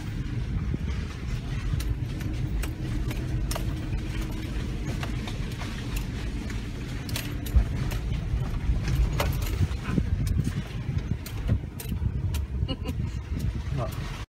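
Inside the cabin of a Toyota Prado crawling along a muddy, rutted dirt track: a steady low engine and tyre rumble, with scattered clicks and knocks from the cabin as it bounces over the ruts.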